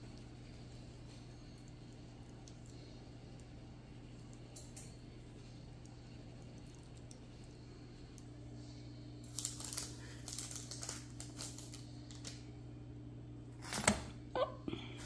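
Steady low hum with a few faint ticks, then a cluster of light clicks and taps from about two-thirds of the way in, and one sharper clack near the end.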